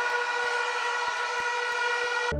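A steady, held horn-like tone at one unchanging pitch with several overtones, with faint ticks about three times a second.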